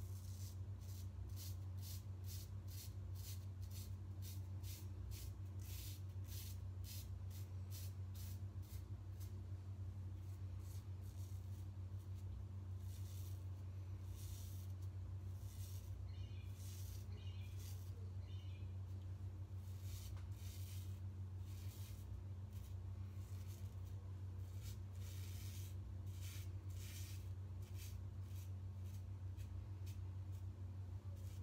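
Quick scraping strokes of an R41 double-edge safety razor cutting stubble through shaving-cream lather on the scalp, several a second in runs with short pauses, over a steady low hum.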